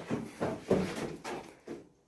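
A few irregular scuffs and rustles of hurried movement and camera handling on a rocky cave floor.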